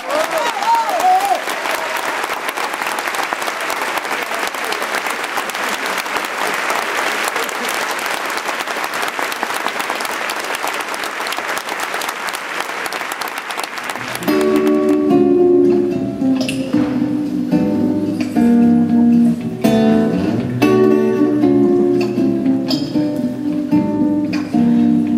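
Theatre audience applauding for about fourteen seconds, then a solo acoustic guitar starts up, playing individual plucked notes.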